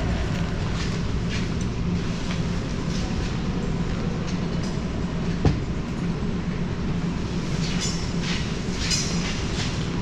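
Steady low mechanical drone filling an underground car park, with one sharp click about five and a half seconds in.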